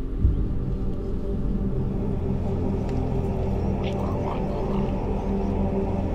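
A low thud about a third of a second in, then a deep, steady drone of held low tones, a designed sci-fi sound for a giant machine. A few faint higher sounds come and go in the middle.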